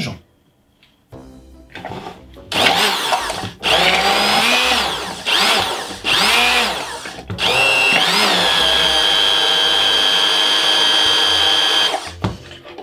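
Hand-held immersion blender running in a plastic jug of chocolate and a little hot milk, starting the emulsion. Its motor whine rises and dips several times as it starts, then holds a steady high pitch and cuts off at the end.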